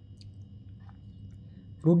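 A short pause in speech: faint steady room hum with a few small clicks, then a voice starts speaking again near the end.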